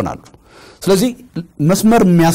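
Only speech: a man speaking Amharic in short phrases, with brief pauses between them.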